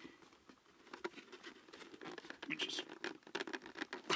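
Cardboard model-kit box being handled: faint scraping and rustling of cardboard with small scratchy ticks, a little busier in the second half.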